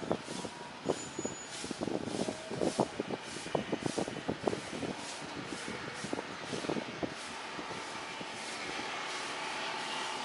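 Boeing 737-800 jet airliner on landing approach: a distant jet rush from its CFM56 engines that grows steadier and slightly louder over the last few seconds, with a faint whine coming in near the end. Irregular crackles and knocks close to the microphone sound through the first seven seconds or so.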